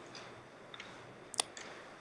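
Faint room tone during a pause in speech, with one short, sharp click about one and a half seconds in.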